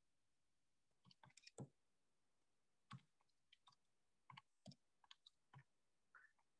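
Faint, short clicks, about a dozen at uneven intervals, consistent with buttons being pressed on a calculator to work out a value.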